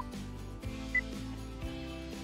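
Light background music under a quiz countdown, with short electronic timer beeps: one right at the start and a higher-pitched one about a second in as the timer runs out.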